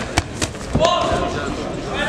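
Two sharp smacks of boxing gloves landing in quick succession, followed about a second in by a voice shouting.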